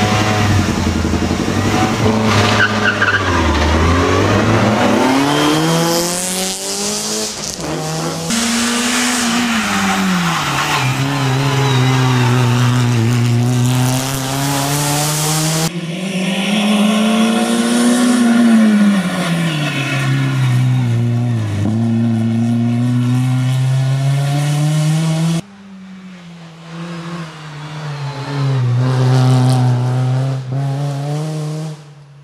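Renault Clio rally car driven hard, its engine revving up and down again and again through the gears, with tyres squealing. Twice the sound jumps abruptly to a new spot; after the second jump the car is quieter, then grows loud as it comes closer near the end.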